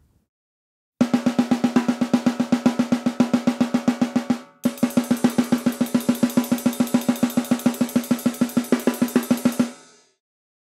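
Drum kit played in a fast blast beat, rapid even snare strokes with kick drum and cymbal, starting about a second in, with a brief break midway and stopping just before the end. It is played with a tight, clenched wrist, a technique the drummer calls wrong for blasts.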